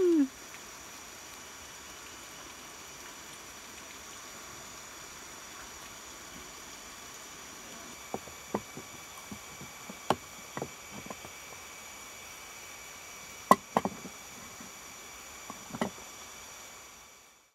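Steady background hiss with faint, even high tones. From about halfway through come scattered sharp clicks and taps, the loudest a little past three-quarters of the way in.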